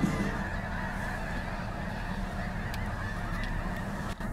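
A huge flock of snow geese calling together: a dense, steady clamour of many overlapping honks, with a low rumble underneath.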